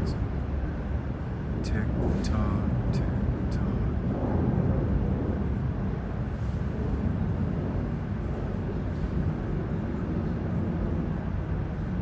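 Night-time city street background: a steady low rumble of traffic, with faint voices briefly and a few sharp ticks in the first few seconds.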